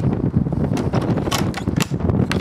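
Low rumble of wind and handling noise on the microphone, with a few sharp clicks and knocks.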